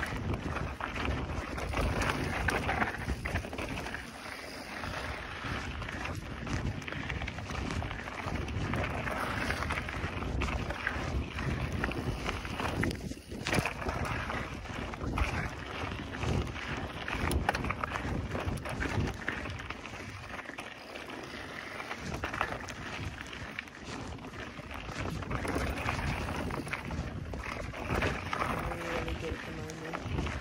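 Mountain bike ridden fast down a dirt singletrack: wind buffeting the microphone over the rumble of tyres on dirt, with rattles and knocks from the bike over bumps.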